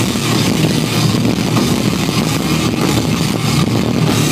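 Live rock band playing loud, dense distorted electric guitar and drums, with no clear held notes.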